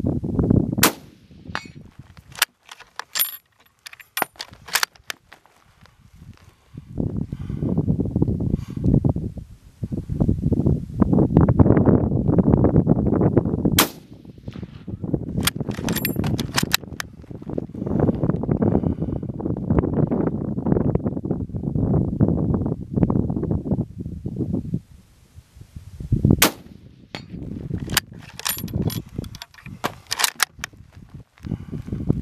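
Rifle shots from a bolt-action military rifle: sharp cracks in three groups, near the start, around the middle and near the end. A low rumbling noise runs through much of the middle.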